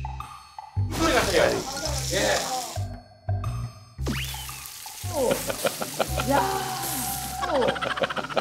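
Thin-sliced pork belly (daepae samgyeopsal) sizzling as it is laid on a hot griddle, a hiss likened to the sound of rain, heard from about a second in, over background music. Laughter takes over in the second half.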